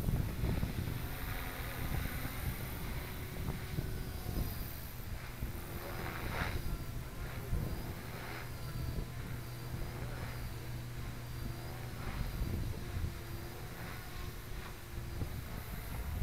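MSH Mini Protos electric RC helicopter flying at a distance: a faint rotor and motor whine that wavers up and down in pitch as it manoeuvres, over a steady low rumble of wind on the microphone.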